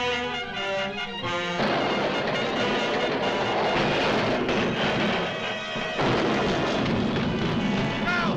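Dramatic orchestral cartoon score. About a second and a half in, a loud, continuous crashing and rumbling joins it as the giant dinosaur smashes through the city street, swelling again near the end.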